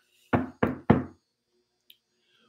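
Three quick knocks on a hand-held deck of tarot cards, about a third of a second apart, the last the loudest, followed by a faint click.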